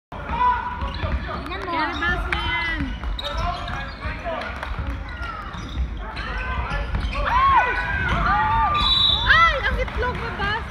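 Basketball game: many short, high squeaks of sneakers on the court floor and a ball being dribbled, with players calling out.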